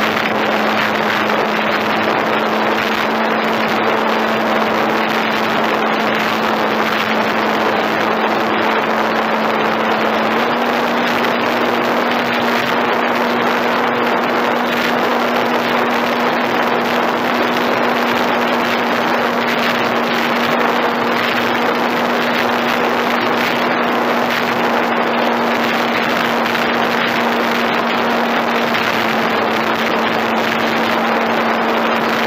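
Electric RC model airplane's motor and propeller in flight, heard from a camera on the wing: a steady hum under loud rushing wind noise. The hum steps up slightly in pitch about ten seconds in and drops back near the end.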